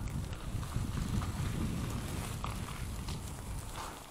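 Electric bike rolling over a rough dirt-and-gravel path: a low rumble with frequent small irregular knocks and rattles from the tyres and bike.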